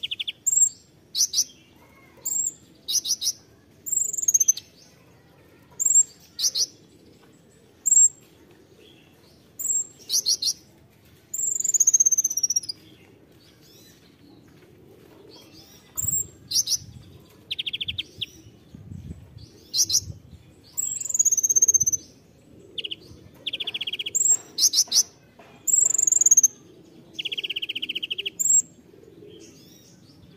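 Male kolibri ninja (Van Hasselt's sunbird) singing: repeated high, sharp chirps and downward-sliding whistles about once a second, mixed with a few short buzzy trills.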